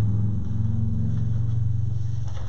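A loud, steady low hum.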